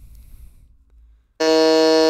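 Quiz-game buzzer sound effect: a loud, steady electronic buzz that starts about one and a half seconds in, as a player buzzes in to answer.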